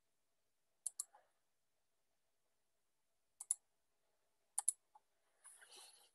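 Faint computer mouse clicks: three quick double clicks, about a second in, at about three and a half seconds and at about four and a half seconds. A soft breath follows just before the end.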